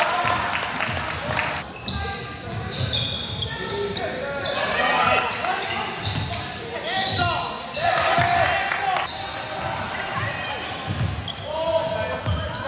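Basketball game sound in an indoor gym: the ball bouncing on the court amid indistinct shouts from players and spectators.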